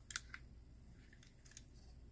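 Near silence with a few faint, sharp clicks, two of them close together about a fifth of a second in, like a small diecast toy car being handled.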